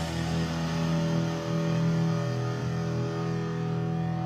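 Live hardcore band's distorted electric guitars holding a steady, ringing chord with no drumbeat.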